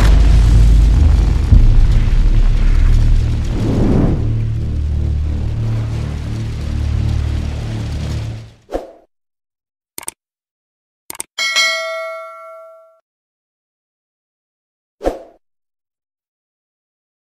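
Loud, deep outro music with a swelling sweep about four seconds in, cutting off after about eight and a half seconds. Then come the sound effects of a subscribe-button animation: a few short mouse clicks, then a bell-like ding that rings and fades over about a second, and one more short click near the end.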